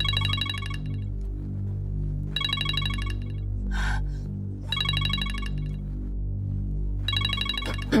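Mobile phone ringtone trilling in repeated bursts about every two and a half seconds, four rings, over a steady, low background music score.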